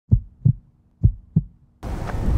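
Heartbeat sound effect: two pairs of deep lub-dub thumps, about one beat a second. Near the end it cuts to a steady low rumble of outdoor microphone noise.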